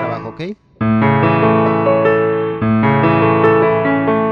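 Yamaha portable keyboard on a piano voice, both hands playing an A major arpeggio. The sound breaks off briefly about half a second in, new notes enter just under a second in and again about two and a half seconds in, and the last one slowly fades.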